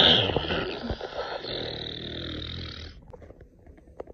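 A person making a drawn-out throaty, hissing vocal noise, loudest at the start and stopping after about three seconds, followed by a few faint clicks.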